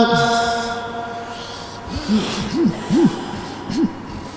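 A man's chanted Quran recitation ending on a long held note, its tone dying away in the hall's reverberation over about a second and a half. In the second half come four or five short voice calls, each rising and falling in pitch.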